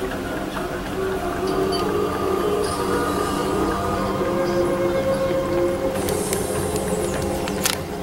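Computer-generated reactor sound effect played through speakers: a steady low hum with a few held tones that shift in pitch. A hiss comes in about six seconds in and ends with a sharp click near the end.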